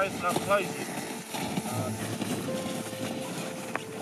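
A line of climbers in crampons walking on snow, with many small crunching footsteps under a dense, even texture. A voice talks briefly at the start.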